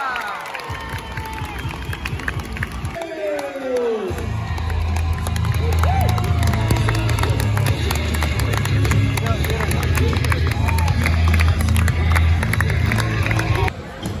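Arena crowd noise with shouting voices. About four seconds in, loud wrestler entrance music with a heavy bass beat starts over the PA, and fans clap and cheer over it. The music cuts off just before the end.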